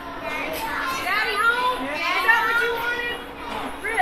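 Indistinct overlapping chatter of children's and adults' voices, with no clear words.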